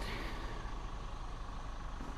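Steady low rumble of distant road traffic with an even hiss, holding level throughout.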